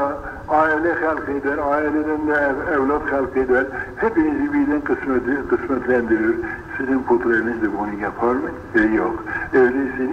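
A man's voice speaking continuously on an old, muffled recording with no upper range, the pitch wavering through long drawn-out syllables near the start.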